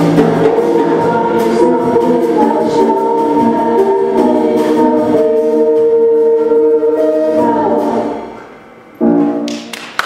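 A concert choir singing the closing bars of a samba. Long held chords fade out about eight seconds in, then one short, loud final chord about nine seconds in dies away.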